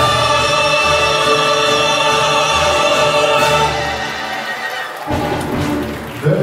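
A vocal ensemble of two women and two men singing a held final chord. The sustained note ends a little under four seconds in and dies away.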